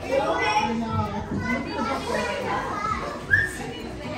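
Overlapping, indistinct chatter of children's and adults' voices in a busy store, with a brief high-pitched cry about three seconds in.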